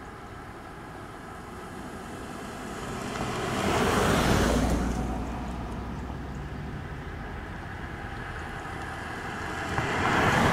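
Two cars driving past one after the other on rough asphalt: an Audi Q7 SUV passes about four seconds in, its tyre and engine noise swelling and fading, then a Fiat 500L closes in and passes near the end.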